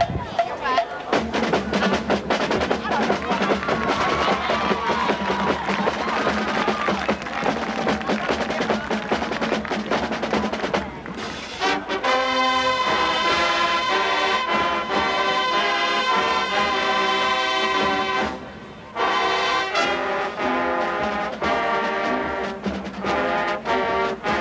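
High school marching band performing: for roughly the first half, drum strokes over a noisy background, then the brass comes in about halfway through, playing full sustained chords, with a brief break in the sound near the end.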